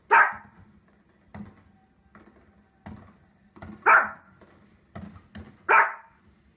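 Small fluffy dog barking: three loud, sharp barks, one just after the start, one near four seconds and one near the end, with fainter short sounds in between.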